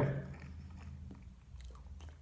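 Faint wet mouth clicks and smacks of a person chewing a cream puff and licking the cream filling off a finger, a few scattered clicks over a quiet room.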